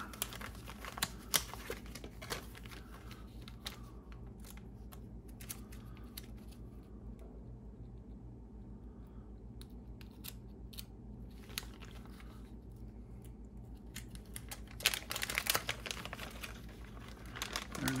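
Small clear plastic parts bag crinkling and rustling as it is handled and opened, with scattered small clicks and a busier stretch of crinkling near the end. A steady low hum runs underneath.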